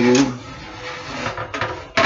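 Handling noise as a latched lockbox is opened and medicine bottles are put back into it: a few light clicks and knocks about a second and a half in.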